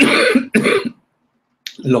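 A man coughing twice in quick succession, the first cough longer than the second.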